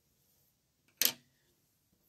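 Quiet room tone broken by one sharp tap about a second in: a small hard object set down on a wooden tabletop.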